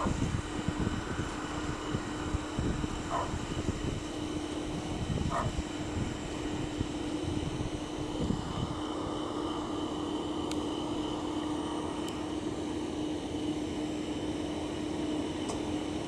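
A steady mechanical hum holding one pitch over a haze of background noise, with a couple of faint short sounds about three and five seconds in.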